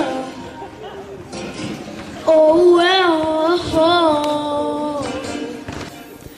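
A boy singing solo into a microphone: after a quieter couple of seconds, one loud sung phrase with a wavering, gliding pitch that ends about a second before the close.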